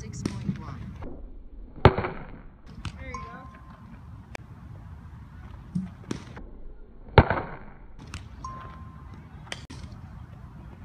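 Softball bat hitting a softball twice, about five seconds apart, each a sharp crack with a short ringing tail.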